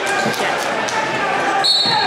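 A referee's whistle, one short blast near the end, signalling the wrestlers to start from the neutral position, over the murmur of spectators' voices in a large hall.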